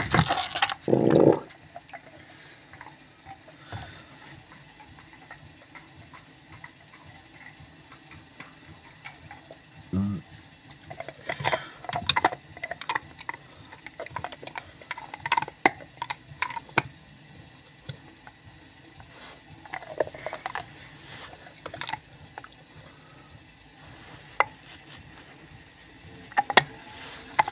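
Hotpoint Ariston front-loading washing machine drum spinning a load of wet stuffed toys in the early, slower stage of its final spin, with a faint steady hum and scattered irregular knocks and clicks.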